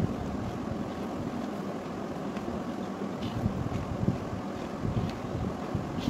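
A hand sloshing and swishing through a milk-powder-and-water mixture in a large aluminium pot, a steady low churning with scattered small splashes.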